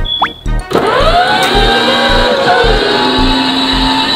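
Electric motor and gearbox of a children's battery-powered ride-on motorcycle whining as it drives. It starts abruptly about a second in, holds steady with its pitch rising and falling slightly, and cuts off near the end. Background music with a steady beat plays throughout.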